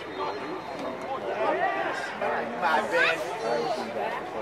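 Indistinct voices of people talking, with no words clear enough to make out, a little louder in the second half.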